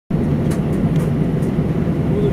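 Steady low rumble inside the cabin of an Airbus A320, its jet engines running at low power as it taxis, with a few faint ticks.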